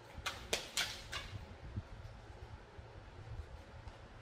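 A deck of tarot cards being shuffled and handled: four short, crisp card snaps within the first second or so, then only a faint low rumble of handling.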